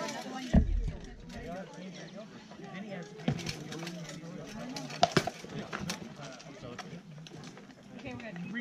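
Sharp knocks of rattan weapons striking shields and armour in armoured combat: one about half a second in, another about three seconds in, and a quick double blow about five seconds in. Onlookers talk steadily underneath.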